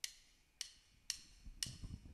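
Drumsticks clicked together in an even count-in, four sharp clicks about half a second apart, with faint low thumps from the stage near the end.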